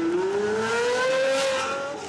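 Ferrari sports car accelerating, its engine note rising steadily as it revs up, over a hiss of tyres and air.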